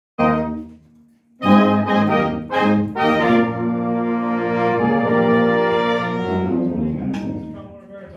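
Marching band's brass and woodwinds playing together: a short chord that dies away, a few sharp accented chords, then one long held chord that fades out near the end.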